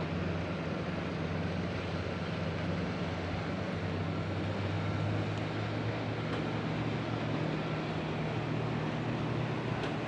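A low, steady motor drone, swelling slightly in the middle, over a faint even hiss.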